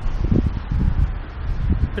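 Wind buffeting the camera's microphone: a loud, uneven low rumble in gusts over a steady hiss.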